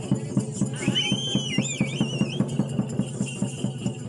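Folk drums and rattling percussion playing a fast, even beat of about six strokes a second. About a second in, a high whistle wavers up and down for a second or so.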